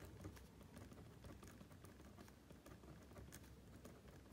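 Faint scratching and tapping of a pen writing on paper: many short, quick strokes over a low, steady room hum.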